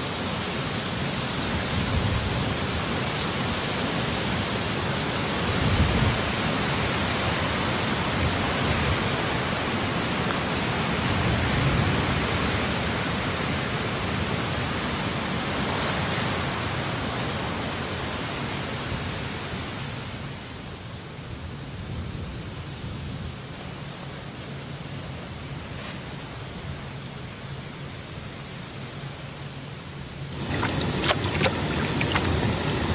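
A steady rushing hiss with some low rumble underneath, like an outdoor soundscape recording. About twenty seconds in it turns quieter and duller.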